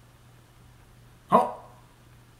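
A single short, sharp vocal outburst from a man, a one-syllable exclamation about a second and a quarter in that dies away quickly.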